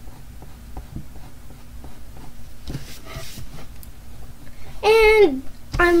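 Faint scratching and light ticks of a pencil and a hand moving on drawing paper, then a child's voice about five seconds in.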